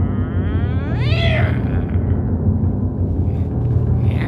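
A high, wavering vocal cry that swoops upward in pitch over about a second and a half, over a steady low drone.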